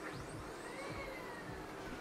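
Home printer starting up unprompted, its motor whirring with a whine that rises in pitch for about a second and then slowly falls.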